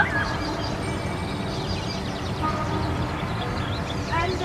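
Outdoor background noise: a steady low rumble with no distinct events.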